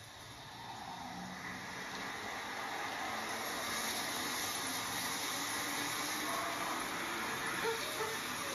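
Trailer sound design: a steady rushing noise with no clear tone, swelling over the first few seconds and then holding.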